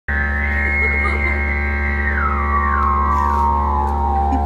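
Live band intro: a steady low drone under a sustained electric guitar chord. From about halfway through, its high notes slide down in steps.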